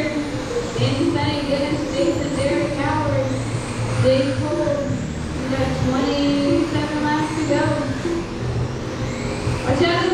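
A race announcer's voice over a PA system, echoing and hard to make out, calling the race. Under it, the high whine of small electric RC race car motors rises and falls as the cars pass.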